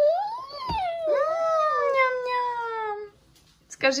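A baby's voice: two long, high drawn-out sounds. The first rises and falls; the second glides slowly down and lasts about two seconds.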